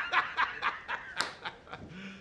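A man laughing heartily, a quick run of 'ha's that slows and fades toward the end.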